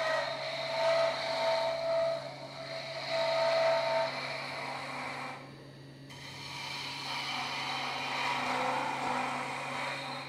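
An Easy Wood turning tool cuts a spinning maple finial on a wood lathe, over the lathe's steady motor hum. There are two stretches of cutting with a brief letup about five seconds in.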